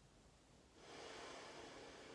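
A person's single slow, faint breath, lasting about a second and a half and starting about a second in: a relaxing breath taken while resting in child's pose.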